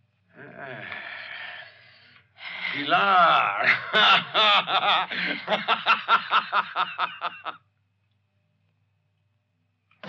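A person's voice, then a long, loud fit of laughter in rapid bursts about four a second, which stops suddenly into a couple of seconds of silence.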